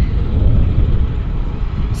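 Wind rumbling on an outdoor microphone, a low, uneven rumble that rises and falls in gusts.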